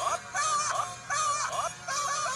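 Jingle from a Japanese McDonald's TV commercial: music with a high, wavering sung melody in short phrases, played through a computer's speakers.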